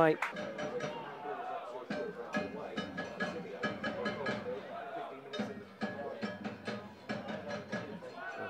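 Music with a regular percussive beat and a few held tones, with voices faintly under it.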